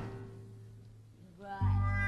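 Stage musical's band music: a loud phrase dies away in the first second, leaving a brief quiet gap. About a second and a half in, a short rising sliding note leads into a loud, low held chord that starts suddenly.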